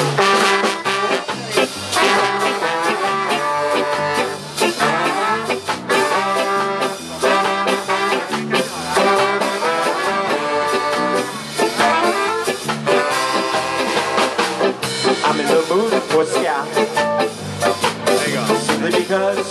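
Live ska band playing an instrumental passage: a horn section of saxophones, trombone and trumpet carries the tune over drums, electric guitar and keyboard, with a steady beat throughout.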